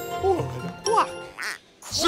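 Cartoon duck quacking, short comic quacks about a second in, over the tail of a music cue that fades out.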